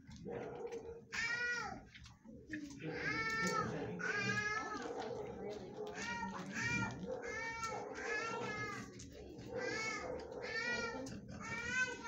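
A dog whining over and over: short, high-pitched cries that rise and fall, about one or two a second, over a steady low hum.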